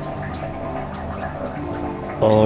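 Water dripping and splashing in a small shower room, under soft background music.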